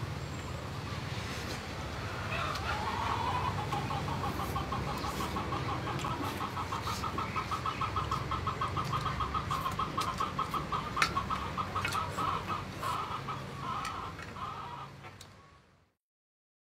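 A bird, likely fowl, calling in a long, fast, even run of short clucks, starting about two and a half seconds in and going on for about twelve seconds, with one sharp click near the end of the run. The sound fades out just before the end.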